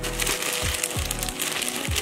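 Plastic mailer bag crinkling as it is handled, over background music with a steady beat.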